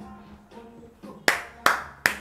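Hand claps: two sharp claps in the second half, about a third of a second apart, the start of a steady clapped beat.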